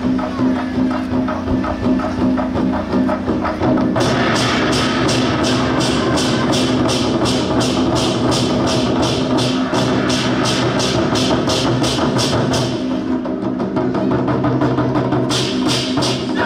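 Taiwanese war drums (zhangu) played by an ensemble with sticks in a driving rhythm, over a steady low tone. From about four seconds in, sharp bright strikes come in at roughly two and a half a second. They drop out near thirteen seconds and come back just before the end.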